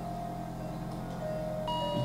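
Quiet background music of sustained, held notes that shift to new pitches a couple of times.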